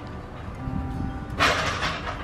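Soft background music over a low rumble, with a short noisy clatter about one and a half seconds in as an aluminium step ladder is carried and knocked.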